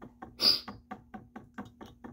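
A regular series of light clicks or taps, about four to five a second, with a short hiss about half a second in, over a low steady hum.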